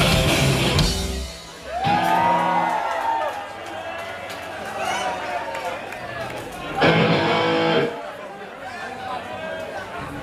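Hardcore punk band playing loud live until about a second in, when the song stops and an electric guitar chord rings out. The crowd cheers and shouts, and about seven seconds in the band strikes a brief loud chord.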